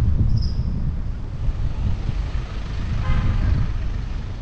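Wind buffeting a body-mounted action camera's microphone as a bike rides through city traffic, a steady heavy low rumble with traffic noise under it. There is a brief high squeak about half a second in and a short pitched sound about three seconds in.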